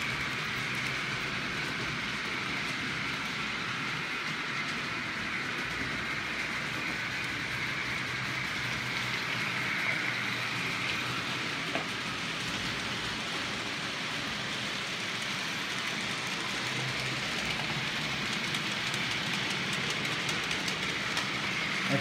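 OO gauge model trains running around a layout: a steady whirr of the small locomotive motors and wheels rolling over the rails, several trains at once.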